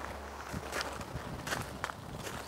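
Footsteps on gravel: several faint steps at an uneven pace.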